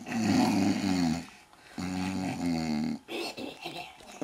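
A person's voice making snoring sounds for a sleeping character: three long, drawn-out voiced snores, the last one shorter and choppier.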